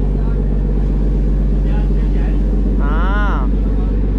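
Steady drone of a wooden fishing trawler's inboard diesel engine running under way, with a brief voice sound about three seconds in.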